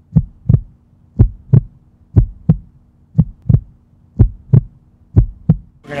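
Heartbeat sound effect: pairs of deep thumps in a lub-dub pattern, about one pair a second, over a faint steady hum.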